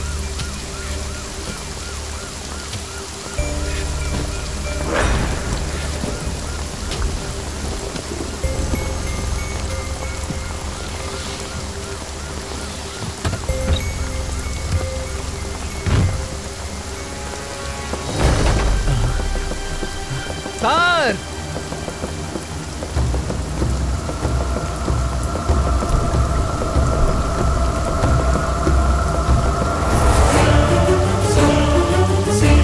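Heavy rain falling steadily with a deep rumble of thunder and a few sharp thunder claps, about 5, 16 and 18 seconds in, over a faint film score.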